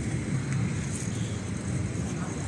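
Wind buffeting the phone's microphone: a steady, choppy low rumble.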